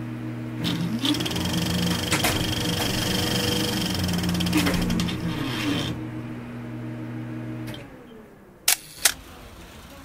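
Title-sequence sound design: a low droning chord whose tones slide up and down, under a fast rattling hiss like an old film projector running, which fades out. About a second before the end come two sharp clicks in quick succession.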